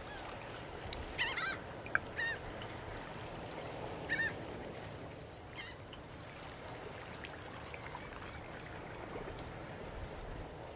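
A few short, pitched bird calls, bunched in the first six seconds, over a steady background hiss.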